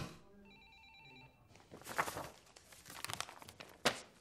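A telephone ringing once, a short steady electronic tone, then paper rustling as sheets are handled, with a sharp crackle near the end.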